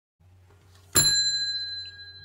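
A single bell ding, struck once about a second in, its clear high ring slowly fading.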